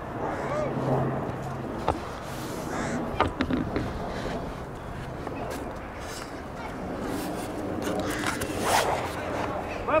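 Distant shouts and voices of footballers on an open pitch, with a few short knocks and a steady low hum underneath.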